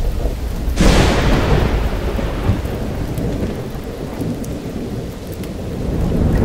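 Thunderstorm: a sharp thunderclap about a second in that rumbles away over several seconds, over steady rain, with another swell of thunder rumble near the end.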